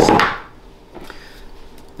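A glass whiskey bottle is set down on a wooden table with a short knock. After it comes quiet room tone with a couple of faint small clicks.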